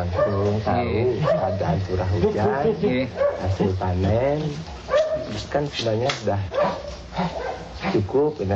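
Speech: people talking in a language the recogniser left untranscribed, with the pitch bending and breaking as in ordinary conversation.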